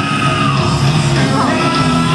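A rock band playing live at high volume, with a voice singing long held notes over the band, heard from far back in a large arena.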